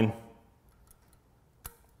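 Small metal parts clicking as the final sprocket of a Shimano road cassette is slid onto the freehub body's splines: a few faint ticks, then one sharp metallic click near the end as it seats against the rest of the cassette.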